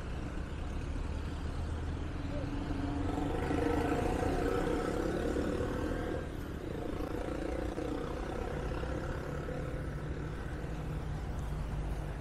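Passing road traffic: a steady rumble of cars and motorcycles going by, with one vehicle's engine growing louder and fading away about three to six seconds in.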